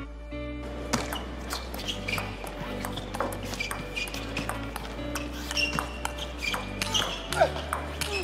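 A table tennis rally: the ball clicks sharply off the bats and the table over and over, starting about a second in, heard under steady background music.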